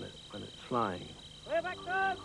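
A man's voice speaking quietly, then, about a second and a half in, a man shouting a drawn-out call. It is a pilot's call for the ground crew to stand clear of the airship before its engines are started.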